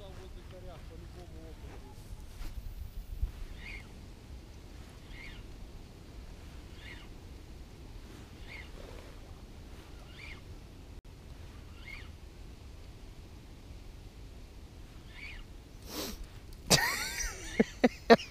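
Wind rumbling on the microphone, with a faint bird call repeating about every second and a half. Near the end comes a loud burst of sharp cries.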